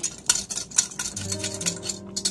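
Rapid, evenly repeated clinking of a utensil against a glass measuring cup as a flour-and-stock slurry is stirred and poured into a pan of chicken stew.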